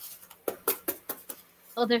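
Oracle cards being shuffled by hand: a run of light, sharp snaps about five a second, followed near the end by a woman starting to speak.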